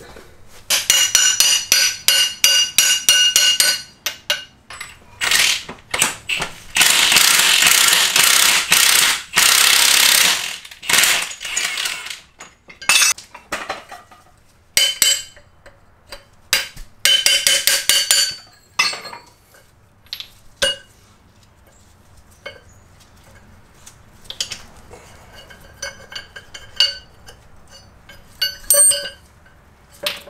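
Rapid metal-on-metal strikes on a Jeep front axle-shaft U-joint yoke, seated in a press. The bursts of blows carry a ringing metallic tone, with a longer harsh, noisy stretch about 5 to 12 seconds in as the U-joint cross is driven out of the yoke. The strikes then fade to scattered lighter clinks of the loose parts being handled.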